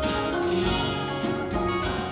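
Live band playing an instrumental passage, guitars with changing sustained notes over a bass line.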